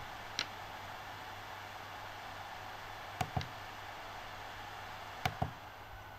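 Feelworld L2 Plus live switcher's cooling fan running at fan speed 2, a steady hiss. Its menu controls click once under a second in, then twice about three seconds in and twice again about five seconds in.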